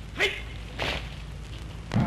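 A battalion of soldiers doing rifle drill in unison: a sharp crack about a quarter second in, a swishing slap about a second in, and a heavy thud of rifles and boots near the end.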